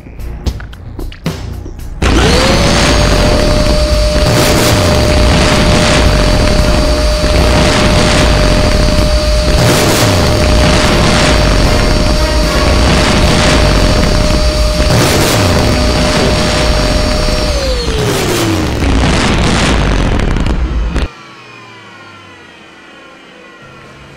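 A vacuum cleaner switched on a couple of seconds in: its motor whines up to a steady pitch and runs loudly for about fifteen seconds, then winds down with a falling whine, and the loud noise cuts off a few seconds before the end. Music plays along with it.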